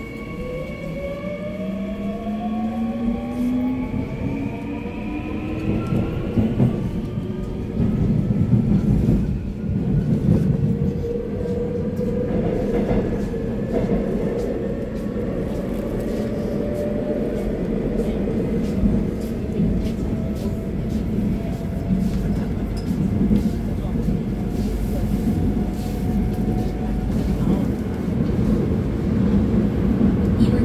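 Seoul Metro Line 3 subway train heard from inside the car while running between stations: the traction motors whine in several tones that rise in pitch over the first six seconds as the train gathers speed. It then runs on with one steady whine over a constant low rumble and scattered clicks from the track.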